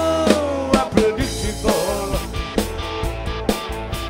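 A folk-rock band playing an instrumental passage: a sustained lead line sliding between pitches over drum-kit hits and a steady bass.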